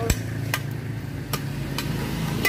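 Machete blade chopping into a coconut husk: four sharp strikes, about half a second to a second apart.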